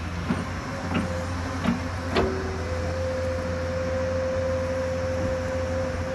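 Hyundai crawler excavator's diesel engine running steadily under work, with a few sharp knocks in the first couple of seconds as the bucket is swung down. A steady whine from the hydraulics sets in about two and a half seconds in and holds as the boom lowers the bucket into the bank.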